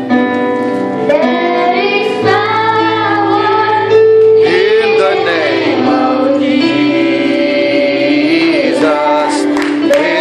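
Children's choir singing a worship song, led by a girl singing into a handheld microphone, over steady instrumental accompaniment.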